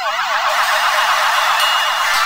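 Electronic magic-spell sound effect for a transformation: a dense, shimmering warble of rapid up-and-down pitch sweeps. It comes in with quick rising glides and then holds steady and loud.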